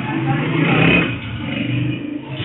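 A motorcycle engine revving, rising to its loudest about a second in and then easing off.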